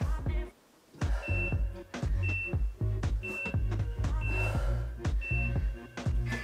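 Background music with a steady bass beat, which drops out briefly about half a second in. Over it, five short high beeps, one a second, sound from an interval timer counting down the end of the exercise.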